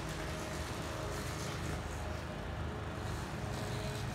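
Steady low rumble of outdoor background noise, with no sudden sounds.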